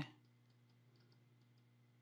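Near silence: a faint steady low hum, with a few faint computer mouse clicks in the first half.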